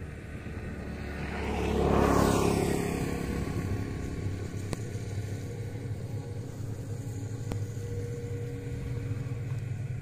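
A motor vehicle passing by on a nearby road, growing louder to a peak about two seconds in, then slowly fading away over a steady low background hum.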